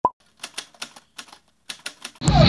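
Typewriter sound effect: a sharp click with a brief tone at the start, then about ten irregular keystrokes.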